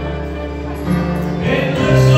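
Live gospel music in a church: voices singing over instrumental accompaniment, with long held notes and a steady bass.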